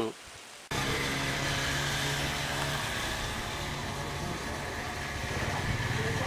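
A steady engine hum with a rush of noise, starting abruptly under a second in after a short quiet stretch.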